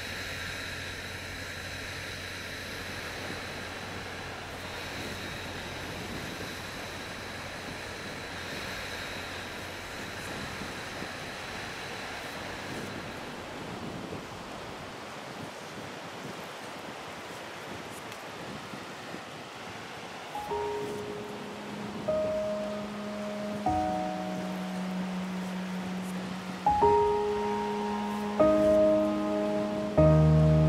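Small sea waves washing onto a shore, a steady rushing. About two-thirds of the way through, slow music of long held notes comes in and grows louder.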